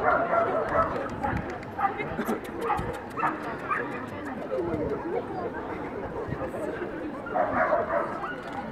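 Dogs giving short barks and yips over people talking.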